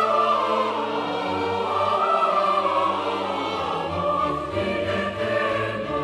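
Classical choral music: voices singing long, held notes with slow changes of pitch.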